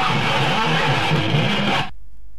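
Harsh noise music: a loud, dense wall of distorted noise over a wobbling low drone. It cuts off suddenly just before the end, leaving a low hum.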